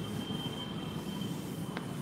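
Whiteboard eraser rubbing across the board, giving a thin, steady, high squeal that lasts nearly two seconds and stops with a small click near the end.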